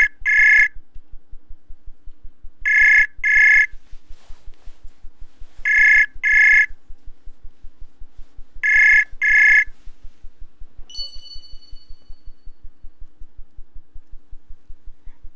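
Ringback tone of an outgoing audio call in a web chat app: four double rings, about three seconds apart. A short chime sounds a couple of seconds after the last ring.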